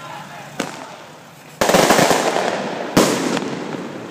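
Two loud explosive bangs about a second and a half apart, each rolling away over half a second, with a lighter sharp crack a second before them.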